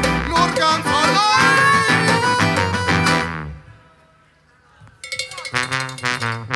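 Live band with accordion, trombone and guitars playing, stopping abruptly about three and a half seconds in; after a pause of about a second and a half the band comes back in.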